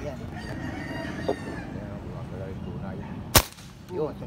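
A single sharp rifle shot fired through the scope about three and a half seconds in, the loudest sound. Before it, a rooster crows in the background during the first second and a half, over a steady low rumble.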